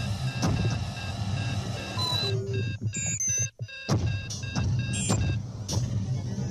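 Electronic sci-fi soundtrack: a low steady drone under steady high beeping tones, with short sliding electronic chirps and a brief cut-out about three and a half seconds in.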